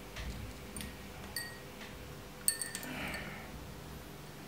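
Metal temperature-sensor probes clinking against drinking glasses as they are moved into a glass of water, with light rustling of the probe cables. Several short ringing clinks, the sharpest about two and a half seconds in.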